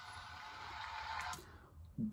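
Faint tail of the concert recording playing back in the room, a soft even wash with a few faint held tones, cut off about one and a half seconds in.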